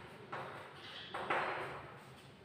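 Chalk scraping on a chalkboard in two short writing strokes, with a brief high squeak between them.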